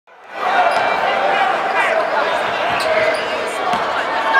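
Game sound from a basketball game on a hardwood court in a large arena: the ball bouncing as it is dribbled, over a steady mix of players' and spectators' voices calling out. The sound fades in over the first half second.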